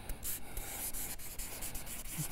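Marker pen writing on flip-chart paper: a run of short, scratchy strokes as words are written.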